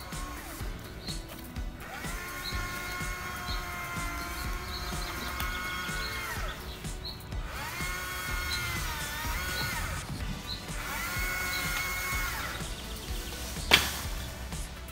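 Chainsaw revving in three bursts, the longest about four seconds, each rising in pitch, holding and then dropping back. A single sharp knock comes near the end.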